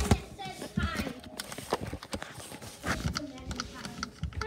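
Irregular knocks and taps, the sound of things being bumped and handled inside a cardboard box, with brief indistinct voices twice.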